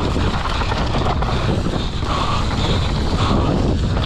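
Wind buffeting an action camera's microphone during a fast mountain bike descent, mixed with the tyres on loose dirt and the rattle of the bike over rough ground. The noise is steady and loud, with short higher-pitched swells every second or so.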